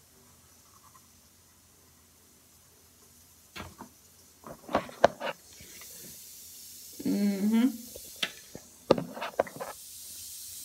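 Bath-bomb egg fizzing in a glass bowl of water, a faint high hiss that comes up in the second half. Several sharp knocks and clicks from handling near the middle, and a short hummed vocal sound about seven seconds in.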